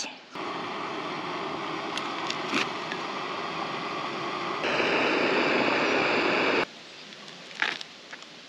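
Steady hiss of rice cooking in a pot on a portable butane camp stove. The hiss turns abruptly louder and brighter a little over halfway through, then cuts off suddenly.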